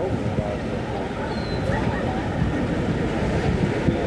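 Indistinct voices talking over a steady rush of wind and sea water heard from a ship's deck.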